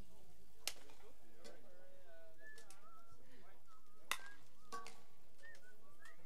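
Two sharp clacks of a bike polo mallet striking the ball, about three and a half seconds apart, with a few fainter ticks, over distant chatter and calls from players and spectators.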